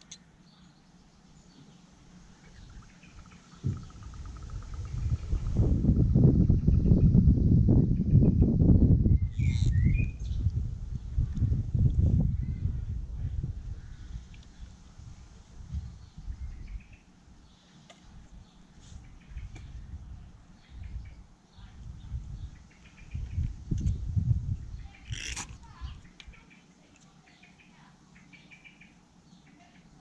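Low rumbling noise that swells a few seconds in and lasts about ten seconds, then returns briefly later, with a few bird chirps.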